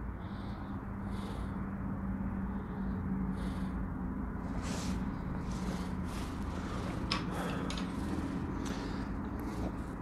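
Steady low hum of room noise, with a few short, soft airy puffs from a man drawing on and breathing out around a corncob pipe.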